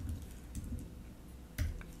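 Computer keyboard typing: a few scattered keystrokes, the sharpest near the end.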